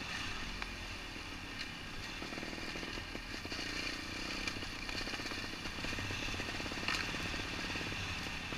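Trials motorcycle engine running as the bike rolls down a loose stone track. Its rapid firing pulses are clearest in the middle, over a steady hiss.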